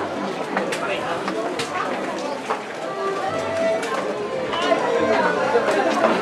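Crowd chatter: many overlapping, indistinct voices of people close by, with a few brief clicks.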